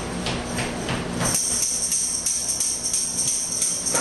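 A tambourine shaken steadily in a continuous jingle, starting about a second in after a few light taps, as the count-in to a live rock band song.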